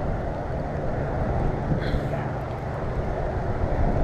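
Steady low rumble of wind and handling noise on the camera microphone while a baitcasting reel is cranked in against a hooked fish.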